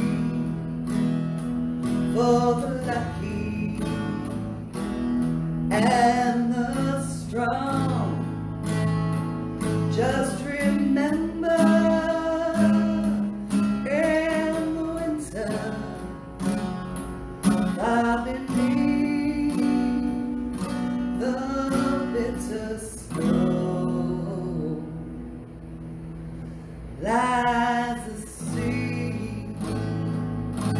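A woman singing solo, accompanying herself on a strummed acoustic guitar. Her voice drops out for about three seconds near the end, leaving the guitar playing alone, then comes back in.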